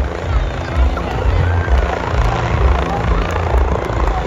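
Light helicopter flying low overhead, its rotor beating steadily and loud, with voices faintly behind it.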